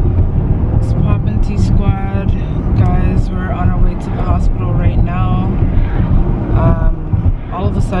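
A woman talking over the steady low rumble of a car cabin on the move: road and engine noise heard from inside.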